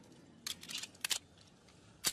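Metallic clicks of a Colt .45 pistol's magazine being released and pushed back in. There is a cluster of small clicks about half a second in and a sharp double click about a second in.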